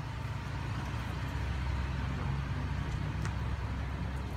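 A pickup truck's engine running with a low, steady rumble as it drives slowly past close by.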